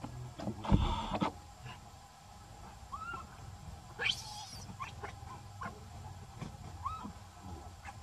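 Baby monkey screaming: one sharp, rising, high-pitched shriek about four seconds in, with a few short squeaky calls around it, in distress at being denied its mother's milk. A loud scuffle in the leaves comes about a second in.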